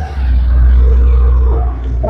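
Wind buffeting the microphone: a loud, low rumble that builds just after the start and eases off near the end.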